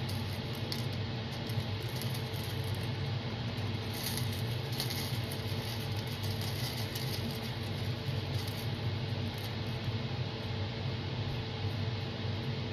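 Steady low background hum with faint, scattered small clicks and rattles of crushed mirror glass being spooned from a plastic cup into a silicone mold.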